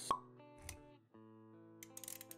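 Intro jingle for an animated logo sequence: a sharp pop a split second in, a softer thump just after, then held music notes.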